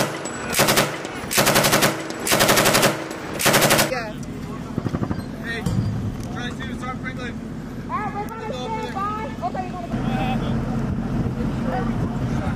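M240-type belt-fed machine gun firing blanks through a blank-firing adaptor, in five short bursts over the first four seconds. Voices follow, and a low steady hum comes up near the end.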